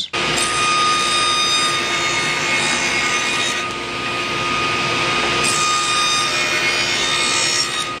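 Table saw with an 18-tooth blade running steadily as it cuts a rabbet along a wooden frame piece; the sound dulls a little for a couple of seconds in the middle of the cut.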